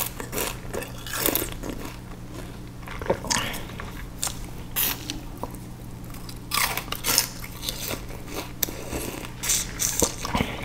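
Biting into and chewing peeled sugarcane close to the microphone: irregular crunches, the loudest cluster a little past the middle.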